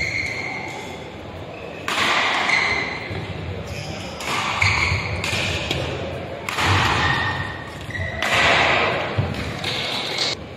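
Badminton rackets striking a shuttlecock in a doubles rally: about six loud smacks, one to two seconds apart, each echoing in a large hall, with short squeaks of court shoes in between.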